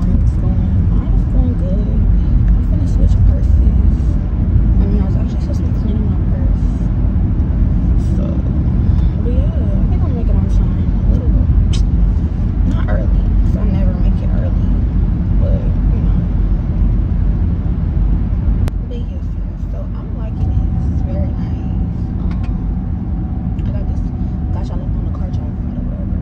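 Steady low road and engine rumble inside a moving car's cabin, easing slightly about two-thirds of the way in, with a woman's voice talking over it.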